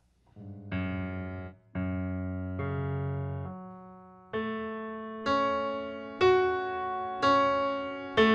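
Software piano playing a slow passage: notes and chords struck about once a second, each left to ring out and fade with the sustain pedal held down.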